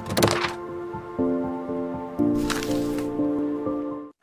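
Intro jingle for an animated logo: held chords that change twice, with sharp clicks in the first half-second and a short noisy swell midway.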